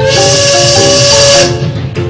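Steam train whistle with a loud hiss of steam: one steady whistle note about a second and a half long that cuts off suddenly, over background music.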